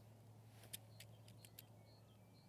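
Near silence: quiet outdoor room tone with a few very faint light clicks.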